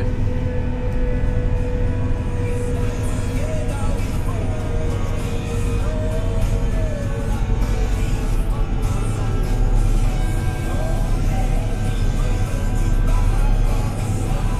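Music from the tractor cab's radio, heard over the steady running of the Fendt 724's diesel engine.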